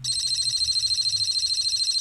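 Small speaker of a homebuilt Z80 computer giving a continuous high-pitched electronic buzz that starts abruptly, with a fast flutter in loudness. The tone comes from a program loop that increments the A register and outputs it to the sound port.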